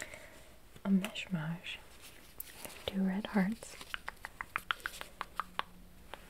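Two short soft vocal murmurs, then a quick run of light taps, about six a second, of long fingernails on a small red heart-shaped trinket.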